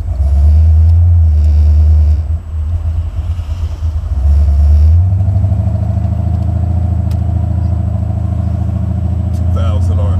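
Buick 455 V8 engine heard from inside the car, with two loud surges of low rumble in the first five seconds as it pulls away, then running steadily at an even drone.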